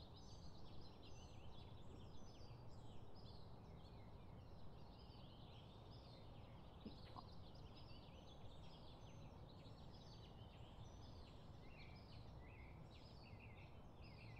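Faint chorus of small birds chirping in the background: many short, high chirps overlapping without a break, over a low outdoor rumble.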